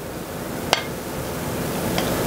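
Steady hiss from the pot of soup heating on the stove, growing gradually louder. One sharp click about three-quarters of a second in as the wooden spoon knocks against the ceramic bowl of sausage mixture.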